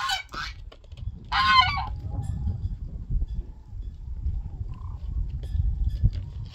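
Domestic geese honking: a short honk at the very start and one longer honk about a second and a half in, over a steady low rumble.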